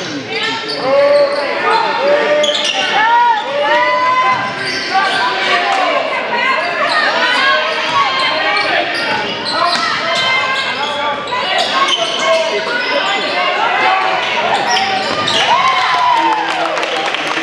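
A basketball bouncing on a hardwood gym floor during live play, with many overlapping voices of players and spectators shouting and calling out. The sound echoes around a large gym.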